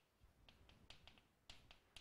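Near silence broken by a handful of faint, short taps of chalk against a blackboard as a few letters are written.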